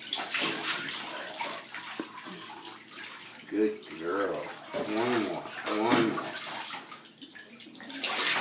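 Water poured from a plastic cup over a dog standing in a bathtub, splashing and trickling into the bath water, strongest in about the first second.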